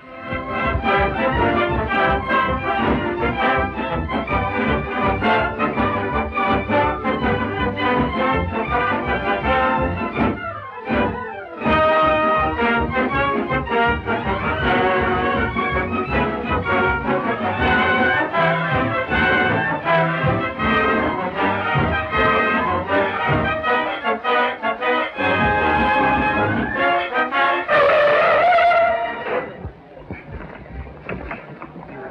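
Orchestral film music, lively and full, with a brief break about eleven seconds in and a rising run of notes near the end.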